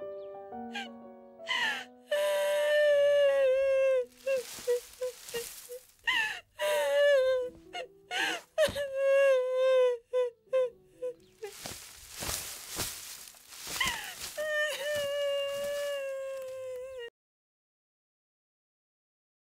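A woman crying aloud: long wailing cries broken by rough, sobbing breaths, over soft background music. The sound stops abruptly about a second before the end.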